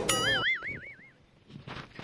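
A cartoon-style boing sound effect: a bright tone with a fast wobble in pitch, about four wobbles a second, that fades out after about a second.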